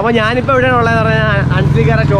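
A man speaking loudly and excitedly, not in English, over a low steady engine drone from a vehicle.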